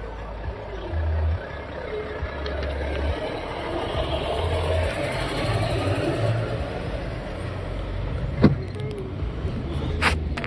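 Volvo FH lorry's diesel engine running as it passes close alongside, heard from inside a car. The sound swells as the lorry goes by, and a single sharp click comes near the end.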